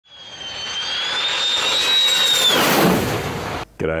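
Jet engine whine that builds up, holds a high tone, then falls away about two and a half seconds in under a rush of noise, cutting off abruptly just before speech.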